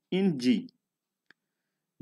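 A narrating voice ends a short phrase, then near-total silence broken by one short, faint click just over a second in.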